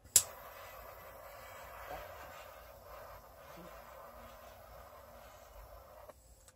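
Hand-held butane torch clicking alight, then its flame hissing steadily over the wet acrylic paint for about five seconds.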